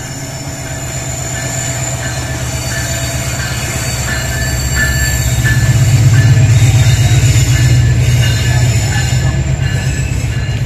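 Diesel locomotive passing at close range hauling a train of tank wagons, its engine rumble building to its loudest about six seconds in as it goes by, then the wagons rolling past. Short high squeals from the wheels on the curve come and go throughout.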